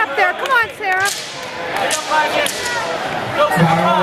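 Karate sparring strikes: sharp slaps of padded kicks and punches landing, about a second in and again near halfway, among shouting voices.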